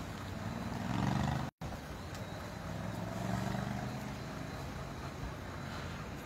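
Car engines running close by, a low hum that swells twice. The sound cuts out for an instant about one and a half seconds in.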